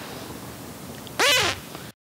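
Beatboxer's voice: after a pause over faint steady background noise, about a second in, one short, loud pitched vocal call whose pitch rises and then falls.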